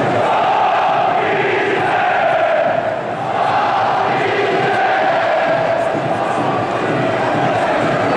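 A large crowd of football supporters chanting in unison, a loud sustained sung chant that dips briefly about three seconds in.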